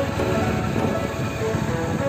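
Motorcycle engine and wind noise while riding at road speed, with background music over it.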